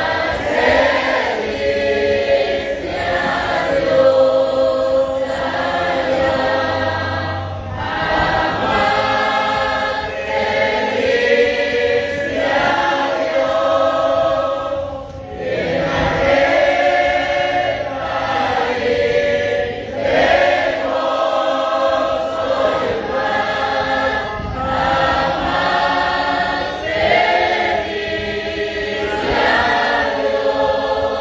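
A group of voices singing together in chorus, in sustained phrases a few seconds long with short breaths between them.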